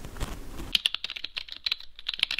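Computer keyboard typing sound effect: a quick run of key clicks, starting about three-quarters of a second in.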